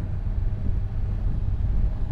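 Kawasaki Ninja 1000SX inline-four engine running at a steady cruise of about 50 km/h, a low even drone, with wind noise over the microphone.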